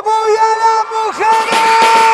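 Live concert recording: one long, steady held note, sung or played, with the noise of a large crowd swelling over it a little over a second in.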